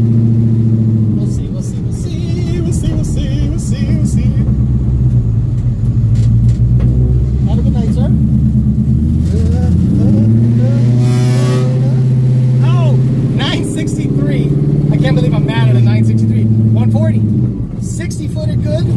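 Supercharged Ford Coyote 5.0 V8 in a 1979 Ford Fairmont, heard from inside the cabin, running at low speed after a drag pass. The engine note holds steady, rises in pitch around ten seconds in and settles back down near the end.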